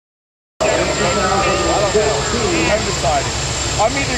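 Silence, then sound cuts in about half a second in: several people talking at once close by, over a low steady rumble of a modified pulling tractor's engine idling at the line.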